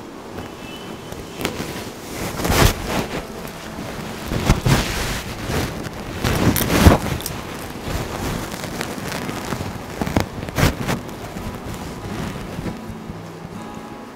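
Silk saree fabric (dupion Banarasi silk with zari brocade) rustling and crinkling as it is handled and draped, in irregular swishes with several sharper crackles.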